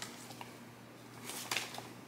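Faint crinkling of brown kraft paper wrapping around a shipped plant as it is handled, with a short louder rustle about a second and a half in.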